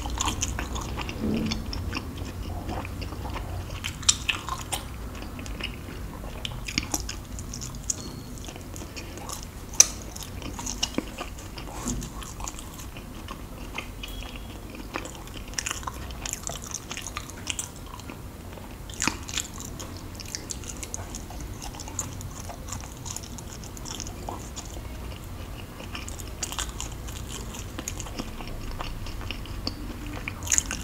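Close-miked biting and chewing of luk chup, Thai mung-bean sweets glazed in jelly: continuous wet mouth clicks and smacks, with occasional sharper bites, the loudest about ten seconds in.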